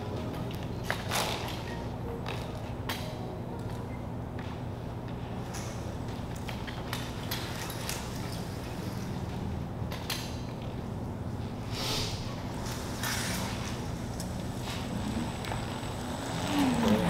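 Self-balancing hoverboard rolling across a concrete warehouse floor: a steady low hum with scattered clicks and knocks, and a few louder scuffs near the end.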